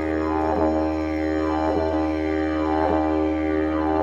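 Didgeridoo music: a steady low drone, with a falling 'wow' sweep that repeats in an even rhythm about once a second.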